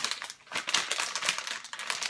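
Plastic snack packaging crinkling and crackling in rapid, irregular clicks as a double-wrapped bag is handled and pulled open, with a brief lull about half a second in.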